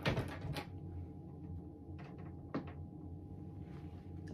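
Handling noise of small plastic toy figures being picked up: a cluster of knocks and rustles in the first half-second, then a few brief clicks about two to two and a half seconds in.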